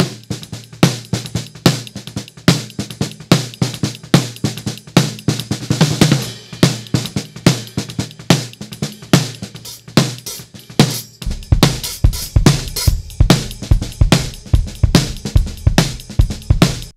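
Multitracked jazz-fusion snare drum, top and bottom mics, played back as a busy run of rapid hits, EQ'd with boosts around 125 Hz, 250 Hz and 8 kHz and a cut around 2 kHz. About eleven seconds in, deep low end comes in beneath the hits.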